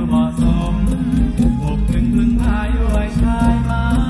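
Music from a band performing a Thai song on stage, with a steady drum beat, deep bass and a melody line.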